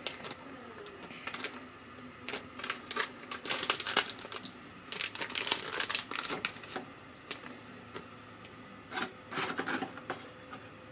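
Thin plastic food packet crinkling and crackling in bursts as it is handled and opened to get out the chashu pork slice. The loudest bursts come about four and six seconds in, with another just before the end.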